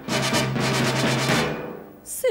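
Instrumental passage of a band accompaniment: a loud full chord with brass and drums struck once and held, fading away over about a second and a half.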